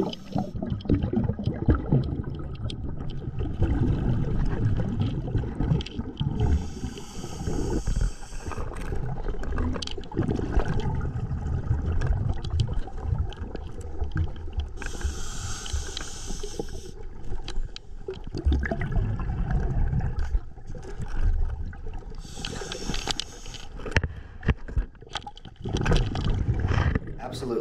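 Underwater audio through a GoPro housing as a scuba diver backs blind out of a narrow tunnel. A constant low rumbling and scraping from movement and handling is broken three times, about every seven or eight seconds, by a hissing rush of exhaled regulator bubbles.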